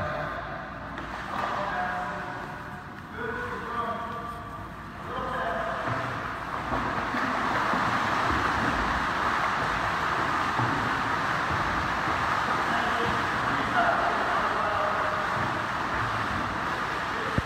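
Steady splashing of a swimmer doing butterfly arm strokes with a flutter kick, a continuous wash of water noise that sets in about five seconds in. Faint voices are heard before it.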